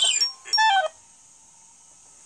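The end of a children's storybook app's cartoon audio, music with a voice-like sound falling in pitch, stopping about a second in; after that only low room hiss.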